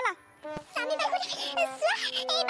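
A high, warbling voice with rapid pitch wobbles, starting about half a second in after a short click, over a steady held tone.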